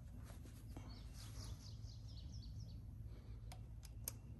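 Faint outdoor background with a bird singing a quick run of short high notes in the middle, and two faint clicks near the end.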